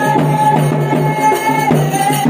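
Folk music with steady rhythmic drumming under a held, wavering melody line.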